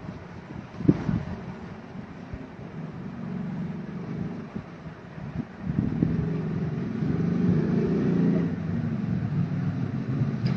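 A low background rumble that grows louder about six seconds in, with a single sharp knock about a second in.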